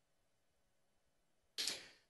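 Near silence for most of the pause, then one short whooshing sound that starts suddenly about one and a half seconds in and fades within a third of a second.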